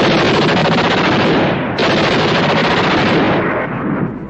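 Rapid automatic gunfire in two long, loud bursts, the second starting a little under two seconds in and dying away near the end.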